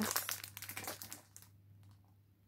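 Clear plastic cellophane wrapping on a boxed gift set crinkling as it is handled, fading out after about a second and a half.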